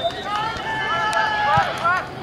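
Voices shouting and calling out, the words unclear.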